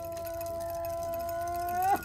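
A wind instrument holds one steady note in a pause of the drumming, bending slightly upward in pitch near the end.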